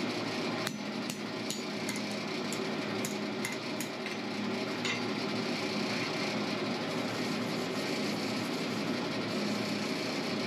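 Hand hammer striking a red-hot steel gib key on an anvil: about ten sharp blows, roughly two a second, that stop about five seconds in. A steady hum runs underneath.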